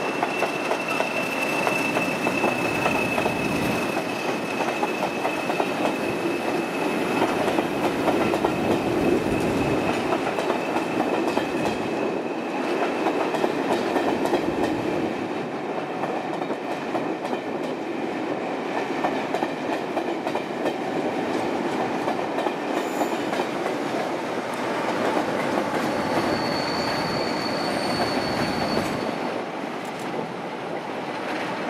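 Diesel-hauled passenger train of Mk1 coaches passing, with a steady rolling rumble and wheels clattering over rail joints and pointwork. A thin, high, steady whistle fades away over the first ten seconds, and a brief higher tone sounds near the end.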